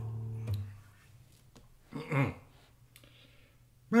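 Nylon-string flamenco guitar strings left ringing, then damped with a click about half a second in. A brief falling sound comes a little after the middle; otherwise it is quiet.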